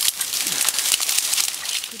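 Twigs and leaves crackling and rustling in a dense thicket as someone pushes through the brush: a steady, busy crackle of many small snaps.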